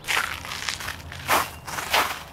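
Footsteps of a person walking over patchy snow and dry grass, a few separate steps.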